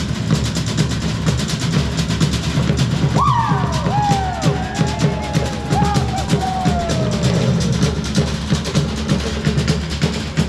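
Fast, driving drumming for a fire knife dance, strokes following one another rapidly and evenly throughout. From about three to eight seconds in, a series of high cries rises and falls over the drums.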